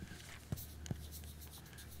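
Writing on a chalkboard: faint scratchy strokes with a couple of short taps of the writing stick against the board, about half a second and just under a second in.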